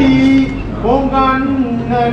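A woman's voice chanting in long held notes that glide up and down.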